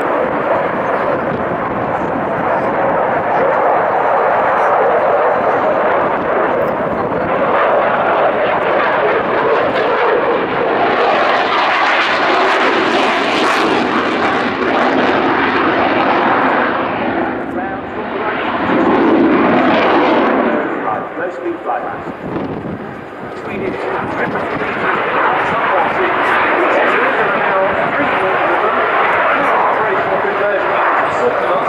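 Jet noise from a Saab JAS 39C Gripen's single Volvo RM12 turbofan during a display, running continuously and rising and falling as the aircraft manoeuvres. It is loudest and brightest a little before the middle, with a deeper swell about two-thirds of the way through.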